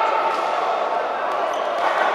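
Voices calling out in a large, echoing sports hall during a boxing bout, with a few faint thuds from the ring in the second half.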